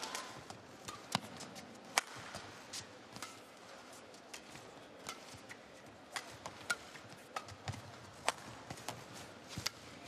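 Badminton rally: sharp racket-on-shuttlecock hits at irregular intervals, about one every half second to a second, with the players' footsteps and shoe squeaks on the court mat.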